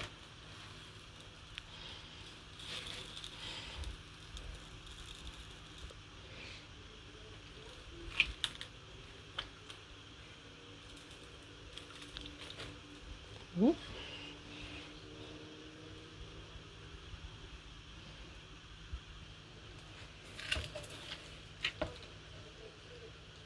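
Quiet handling of baked fish pieces being turned over on a metal baking tray, with a few light clicks and knocks of hand and spatula against the tray. There is one brief rising squeak about halfway through.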